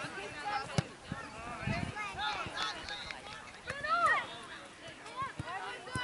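Distant shouts and calls of players and spectators during a football match, with a couple of sharp knocks, the first about a second in.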